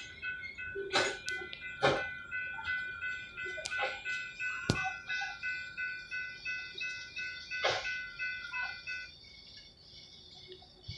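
Railroad grade-crossing warning bell ringing in even, rapid strokes and stopping about nine seconds in, with several sharp knocks over it, the loudest about two, five and eight seconds in.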